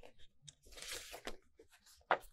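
Paper rustling and crackling in several short, irregular crinkles as a folded paper poster is handled and opened out by hand.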